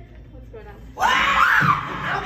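A person screams loudly, starting suddenly about a second in, after a second of faint background sound.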